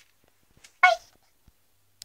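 A single short, high-pitched vocal squeak about a second in, with a few faint clicks around it.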